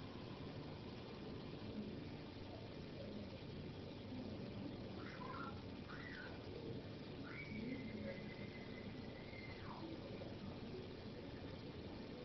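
Quiet room tone with a steady faint hiss. Faint high whistle-like tones come and go midway, one held for about two seconds.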